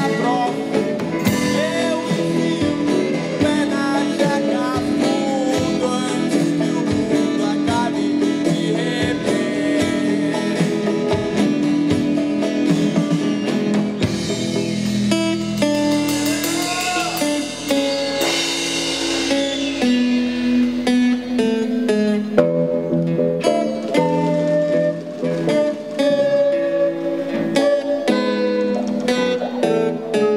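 Music: a band playing, with guitar and a singing voice.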